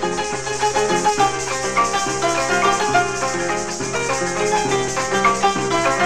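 Venezuelan joropo (música llanera) playing instrumentally: a llanero harp plucking a quick melody over a repeating bass line, with maracas shaking steadily.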